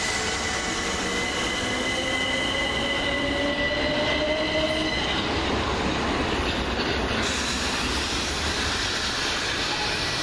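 Class 377 Electrostar electric multiple unit moving through the station: its traction motors give a rising whine over the first five seconds, over the steady rolling rumble of the wheels on the rails, with a steady high-pitched tone above.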